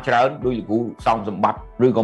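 A man speaking in Khmer, with a short pause partway through, over faint background music.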